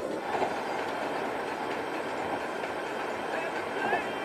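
Steady road and engine noise inside a moving car's cabin.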